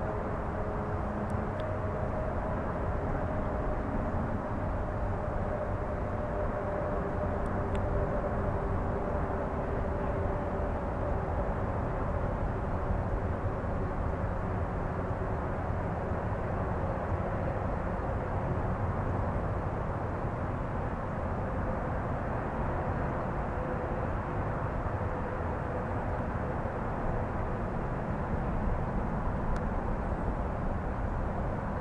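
Steady low rumble of a distant engine, with faint humming tones that drift slowly lower through the first half.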